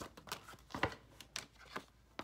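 Tarot cards being handled and shuffled by hand: a few soft, short flicks and rustles of the cards.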